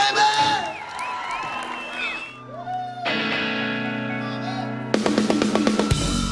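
Crowd cheering and whistling, then a sustained chord held for a few seconds, and about five seconds in a live rock band comes in with drums and electric guitar as the song starts.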